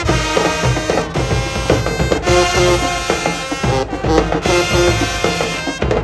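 A marching band playing loudly: brass and sousaphones holding punchy notes over the drumline, with several brief breaks between phrases.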